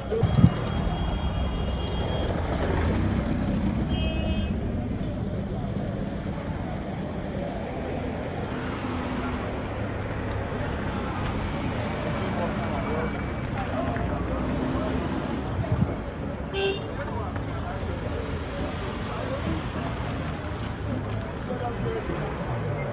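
Busy street ambience: steady traffic rumble and background voices of passers-by, with short horn toots a little after the start, about four seconds in, and again near the seventeen-second mark.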